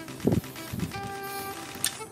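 Handling noise from a wired microphone being fitted with its new replacement cartridge and windscreen: a low thump about a quarter second in and a sharp click near the end. Faint background music holds a few steady notes under it.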